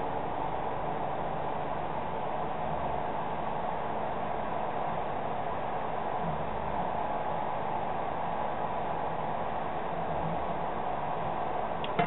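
Steady background hiss with a faint hum, even throughout.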